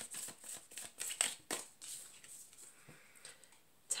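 A tarot deck being shuffled by hand: a quick run of light card slaps and flicks that thins to a few faint taps after about two seconds.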